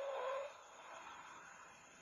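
Car tyres squealing in one held, steady tone as a Chrysler CL Valiant sedan is thrown through a slalom, stopping about half a second in. After that there is only faint hiss from an old television soundtrack.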